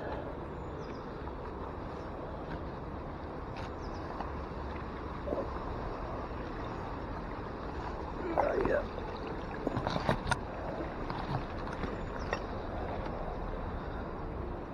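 A bicycle pulled from a canal clattering onto the bank: a short burst of metal knocks and rattles about ten seconds in, over a steady outdoor hiss. A brief voice sound comes just before it.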